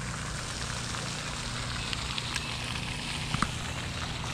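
Steady hiss of falling spray from a pond's aerating fountain splashing onto the water, with a few faint ticks partway through.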